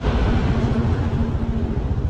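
Motorcycle engine running while riding, its firing pulses steady, with a rushing noise over it that is strongest in the first second.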